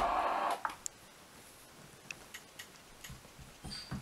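A voice tails off about half a second in. Then there is a quiet room with a few scattered light clicks and taps.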